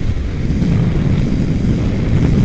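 Wind rushing over the microphone of a sport motorcycle riding at freeway speed, a steady low rumble that grows a little louder about half a second in as the bike passes a bus.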